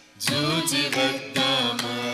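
Group of children and young women singing a Telugu Carnatic devotional song in unison, in folk-style raga Kharaharapriya. The voices come back in about a fifth of a second in after a brief break, over a steady low drone, with mridangam strokes marking the beat.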